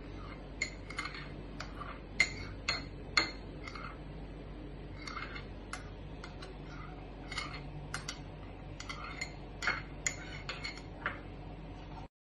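Spoon scraping and clinking against the inside of a small glass bowl while spreading curd around it: many short, irregular clinks.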